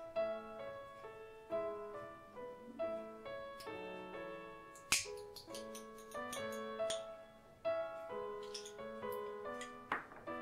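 Background piano music, a gentle melody of single notes struck and fading. About five seconds in, a single sharp tap or click stands out above the music.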